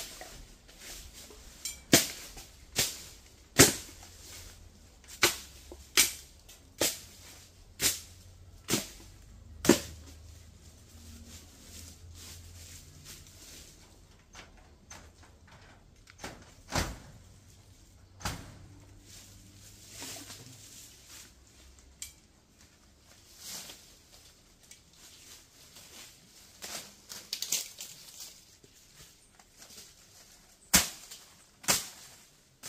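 A run of about eight sharp blows from a hand tool, roughly one a second, then a few scattered blows later, as overgrown bush is chopped back.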